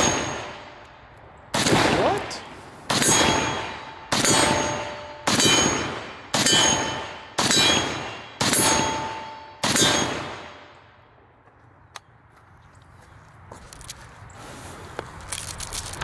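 Pioneer Arms Hellpup AK pistol in 7.62x39 firing eight slow, evenly spaced shots, about one a second. Each shot is followed by the ring of a steel target being hit. The firing stops about ten seconds in.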